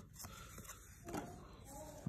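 Faint papery rustling and light ticks of trading cards being shuffled and slid against each other in the hand. A faint voice sounds in the background near the end.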